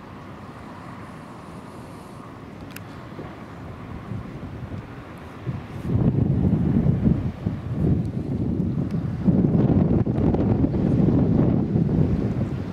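Wind buffeting the microphone: a low, uneven rumble that starts gusting loudly about halfway through, after a quieter steady stretch.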